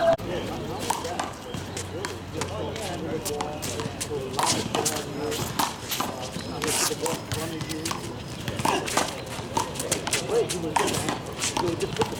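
One-wall handball rally: the small rubber ball smacking off the concrete wall and the players' hands in irregular sharp slaps, with sneakers scuffing on the court.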